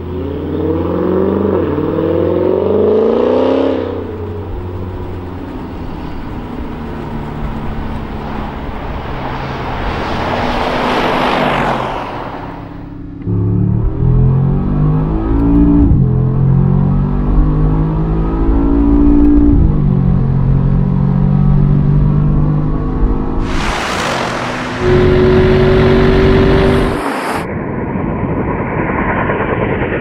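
Twin-turbo V8 engines of two big SUVs accelerating hard in a drag race, the engine note climbing in pitch through the gears, with loud rushes as the vehicles pass. The sound breaks off abruptly a few times between shots.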